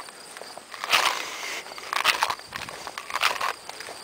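Footsteps swishing through short grass, one step about every second.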